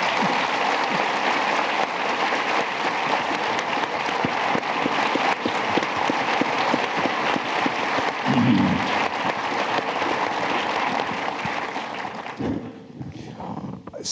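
Audience applauding, a dense steady clapping that dies away about twelve seconds in.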